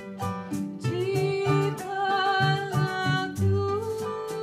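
Kroncong string band playing: acoustic guitars and small ukulele-like strummed instruments keep a steady interlocking plucked rhythm, and a long held melody note slides in about a second in.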